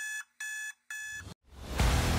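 Digital alarm-clock beeping: three evenly spaced electronic beeps, about two a second. Music swells in near the end.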